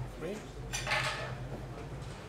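Carom billiard balls clacking together once, about a second in: a bright, sharp click that rings briefly.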